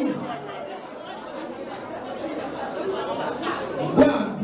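Speech: a man preaching into a handheld microphone.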